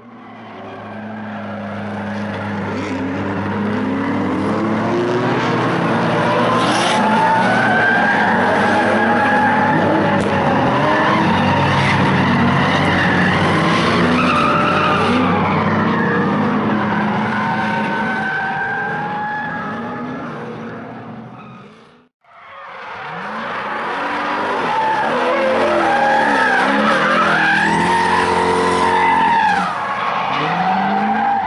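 Drift cars sliding sideways in tandem: several engines revving up and down on the throttle, with tyres skidding and squealing. The sound fades out about two-thirds of the way through and fades back in.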